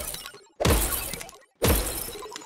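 Edited outro sound effect: sudden crashing hits with a glassy shatter and a deep boom. One lands about half a second in and another about a second and a half in, each fading out within a second.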